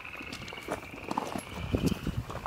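Footsteps crunching on gravel: a string of irregular steps that grow louder and closer together toward the end.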